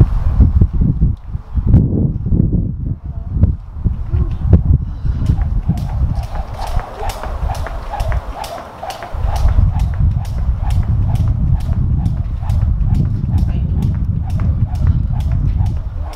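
A jump rope slapping a concrete floor in a steady rhythm of sharp clicks, starting about five seconds in, over heavy wind rumble on the microphone.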